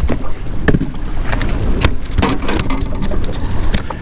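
Wind rumbling on the microphone over a boat on open water, with a few sharp clicks and knocks scattered through it.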